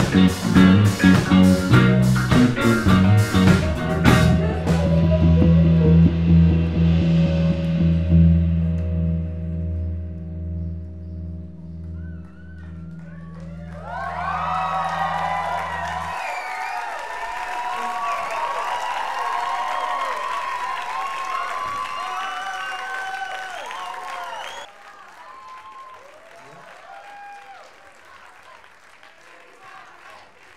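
A live rock band with electric guitars, bass, keyboard and drums plays a few seconds of a steady beat. Its closing chord then rings out and fades for about twelve seconds before cutting off. An audience cheers and applauds over the end of the chord, then dies down to quieter crowd noise for the last few seconds.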